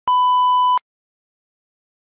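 A single steady electronic beep at one pitch, about three-quarters of a second long, starting and stopping abruptly.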